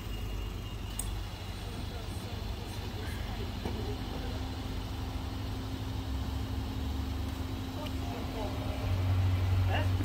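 A car engine idling: a steady low rumble with a steady hum above it that comes in a few seconds in, the rumble growing louder near the end.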